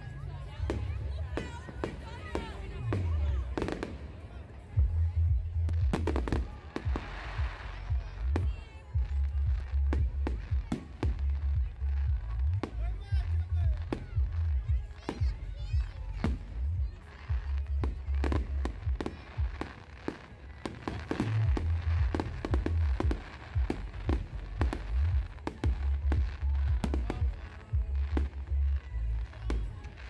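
Aerial fireworks display: a continuous run of sharp bangs and crackling bursts, many shells going off in quick succession, over a deep low rumble that swells and drops every few seconds.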